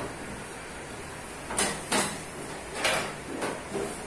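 Hands working a lump of fondant on a floured stainless steel worktop: about four short rubbing strokes in the second half.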